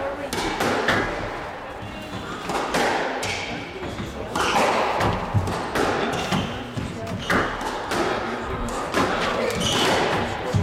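Squash rally: the ball is struck by the rackets and thuds against the court walls, a sharp impact every second or so at an uneven pace.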